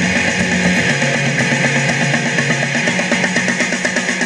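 Rock music in a passage with no vocals: electric guitar over a steady, driving beat, with an electric bass guitar played along with the recording.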